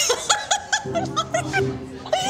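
A woman laughing in a quick run of short, high bursts, with background music coming in about a second in.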